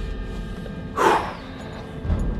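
A driver's short, sharp exhale about a second in, over low road rumble inside a moving Tesla Model 3's cabin.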